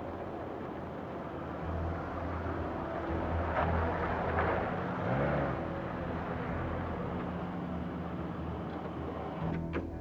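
A Jeep Wrangler driving up and turning into a driveway, its engine and tyres swelling to loudest about four to five seconds in, over background music with sustained low notes.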